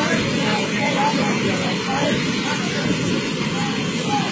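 Loud, steady rush of a flooding mountain torrent pouring over the road, a constant roar of churning water.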